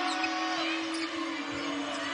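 Live basketball court sound: a ball being dribbled and sneakers squeaking on the hardwood over arena crowd noise, with a steady low hum underneath.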